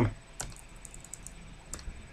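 Light, irregular clicking of computer keyboard keys, about a dozen quiet taps spread unevenly over two seconds.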